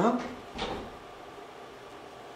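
A man's short questioning "Huh?", then a brief thump about half a second in, followed by quiet room tone.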